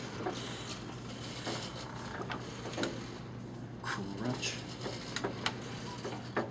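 Letterpress platen press cycling through an impression: a steady motor hum under scattered, irregular clanks and clicks of the mechanism. A man laughs about a second in.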